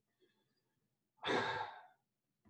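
A man's sigh: a single breathy exhale, lasting under a second, that starts about halfway through and fades away.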